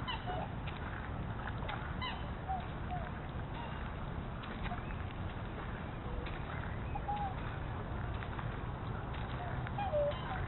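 Mixed flock of swans and ducks calling: scattered short honks and calls, several in quick succession about two to three seconds in and others spread through the rest, over a steady low background noise.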